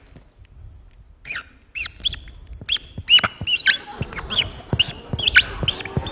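Felt-tip permanent marker squeaking on a glossy printed map as characters are written. A rapid series of short, high squeaks starts about a second in and goes on for about four seconds.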